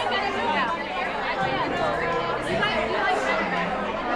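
Overlapping chatter of a group of women around a dinner table, many voices talking at once with no single speaker standing out.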